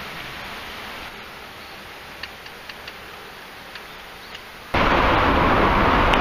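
A faint steady hiss with a few soft ticks, then, about three-quarters of the way in, a sudden cut to loud, steady rushing noise from riding a bicycle through a road tunnel.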